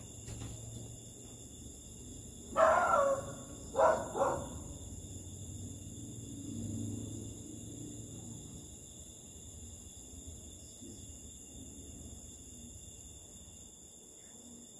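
An animal calls twice, about a second apart, a few seconds in, over the steady high chirring of night insects.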